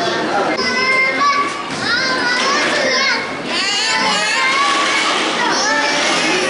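Young children's high-pitched voices, several at once, talking and calling out.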